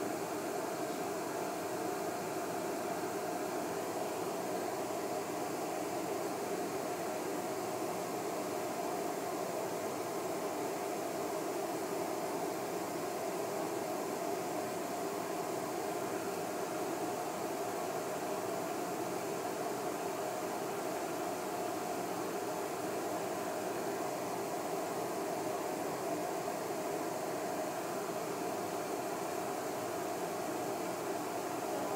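Steady, even whooshing fan noise from an induction hob with a built-in downdraft extractor while a pot of water heats on it.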